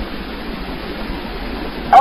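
Steady, even hiss of background noise in a silent pause of a congregational prayer, with no voice. A man's voice begins right at the very end.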